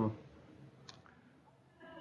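The tail of a spoken 'um', then a pause of faint room tone with a single short click about a second in, before speech resumes near the end.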